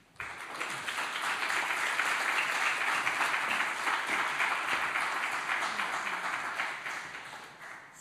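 Audience applauding, swelling just after the start, holding steady, then dying away near the end.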